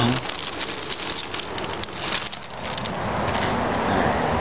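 Black plastic sheeting over a tent rustling and crinkling as it is handled and pulled, a dense run of crackles.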